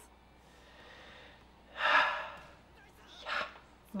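A person's sharp gasp about halfway through, followed a little over a second later by a shorter breath.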